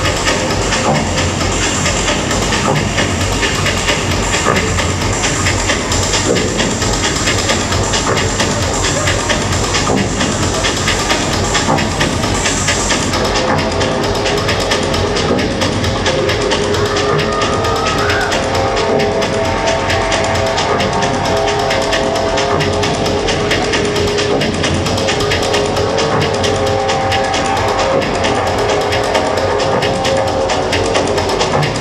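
Dub techno from a live DJ set, played loud through a club sound system with a steady beat. About 13 seconds in the top end is filtered away, and held chord tones come in soon after.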